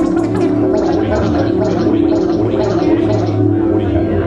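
Live improvised electronic music: a sustained low drone with a rhythmic overlay of short, noisy strokes, about two a second, that start bright and fade.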